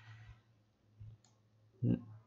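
A single soft computer-mouse click about a second in, against faint room noise.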